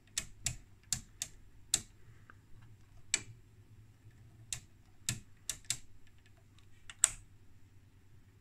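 Detent clicks of the Trio CS-1352 oscilloscope's front-panel rotary VOLTS/DIV switches being turned by hand: about a dozen sharp clicks, some in quick runs and others spaced out, the loudest near the end.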